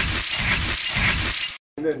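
Edited-in electronic sound effect under an on-screen targeting graphic: a buzzing, hissing texture with a short high chirp repeating about twice a second. It cuts off suddenly about one and a half seconds in.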